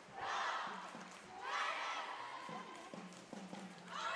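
A cheerleading squad shouting a cheer in unison: two long shouts in the first half, then a few sharp knocks before the next shout begins at the end.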